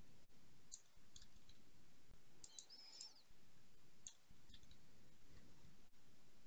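Near silence: room tone with a few faint, scattered computer clicks while code is entered in an editor, and one brief high chirp about three seconds in.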